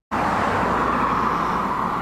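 Road traffic on a street: a steady rush of car noise that starts after a split-second gap in the sound.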